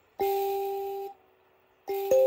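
Mbira dzavadzimu keys struck by thumb: a note with its octave rings with the buzz of the bottle-cap rattlers for about a second and is cut off, then after a short silence a new note begins near the end.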